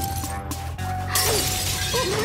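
Glass snow globes crashing onto a floor and shattering, a sudden burst of breaking glass starting about a second in, over background music.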